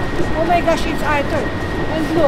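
People talking over the steady low rumble of street noise, with a faint steady high-pitched tone.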